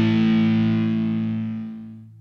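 Distorted electric guitar chord held at the close of a song, fading out and dying away near the end.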